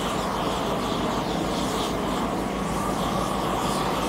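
Propane torch burning steadily as it heats a thermoplastic bike-lane pavement marking to fuse it to the asphalt.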